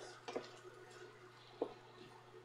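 Faint stirring of diced vegetables and ground pork in a frying pan with a wooden spoon, with a couple of soft knocks of the spoon against the pan, one shortly after the start and one near the end.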